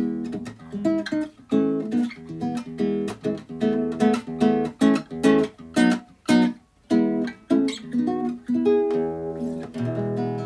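Nylon-string classical guitar fingerpicked, a flowing run of plucked notes and chord shapes in E major at about three or four notes a second. It settles into a held, ringing chord near the end.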